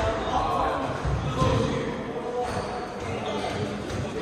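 Squash court between rallies: players' footsteps and shoe scuffs on the hardwood floor in a reverberant hall, with voices in the background and no clear ball strikes.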